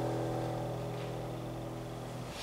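A held closing chord on a digital piano, ringing on and slowly dying away.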